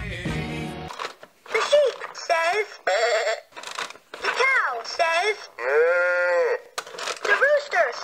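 Fisher-Price See 'n Say toy playing its recorded voice and farm-animal sounds, with one long call about six seconds in. Music cuts off about a second in.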